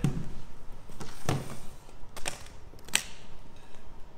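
Guitar hardshell case being handled: two dull knocks as it is set down, then two sharp clicks as its metal latches are snapped open.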